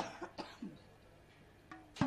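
A faint pause between sung lines: a few soft short sounds in the first second, one of them a brief throat or cough-like vocal sound, then near quiet with a faint short voice sound near the end.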